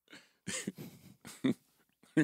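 A few short, suppressed laughs and breathy chuckles from men, in separate bursts about half a second apart.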